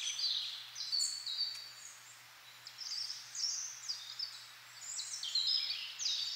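Small birds chirping: short, high notes in quick runs, with a lull about two seconds in that picks up again after about three seconds.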